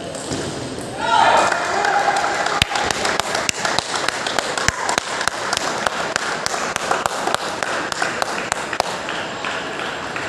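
Table tennis balls clicking sharply and irregularly off paddles and tables, from several tables in play at once, in a large, echoing sports hall. A voice calls out about a second in, over steady crowd chatter.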